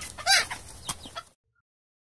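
A chicken clucking: one short call that rises and falls in pitch about a quarter second in, over a faint hiss, stopping suddenly after about a second.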